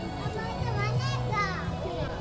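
Children's voices calling and chattering among a crowd of people, with a couple of high gliding calls in the middle, over background music.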